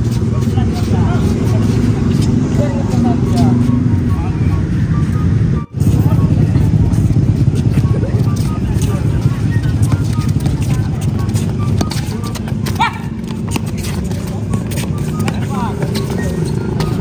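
Voices of players and spectators calling out and chattering around an outdoor futsal game over a steady low rumble, with the sound cutting out briefly about six seconds in.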